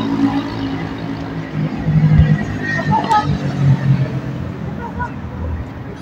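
City road traffic, cars driving past in a steady rumble, with indistinct voices of people talking nearby.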